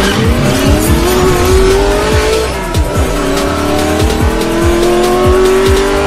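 A racing car engine revving up, its pitch climbing for about two and a half seconds, dropping as it shifts gear, then climbing again. Under it runs electronic music with a heavy bass beat.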